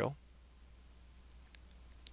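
Quiet room tone with a low steady hum and a few faint computer mouse clicks about a second and a half in.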